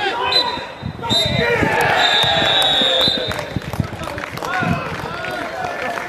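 Referee's whistle blown three times, the last blast the longest, over spectators shouting and calling out, with scattered thumps.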